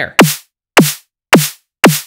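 Synthesized snare drum made in Vital from a sine wave with a fast downward pitch drop layered with white noise, compressed and saturated, played four times about half a second apart. Each hit is a short, sharp crack whose pitch falls quickly.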